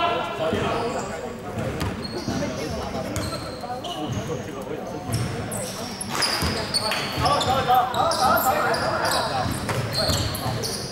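A basketball bouncing on a wooden indoor court, with sneakers squeaking on the floor as players move, in a large echoing sports hall.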